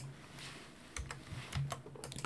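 A few faint, scattered clicks of a computer being operated as the lecture slide is advanced.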